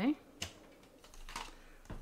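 Paper trimmer and cardstock being handled after a cut: two short, sharp clicks, about half a second and a second and a half in, with faint rustling of card between.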